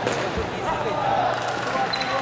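Table tennis ball bouncing on the table as a player prepares to serve, with the steady chatter of many voices around it.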